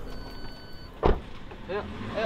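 A car door shut with one loud thud about a second in. A short burst of voice follows near the end.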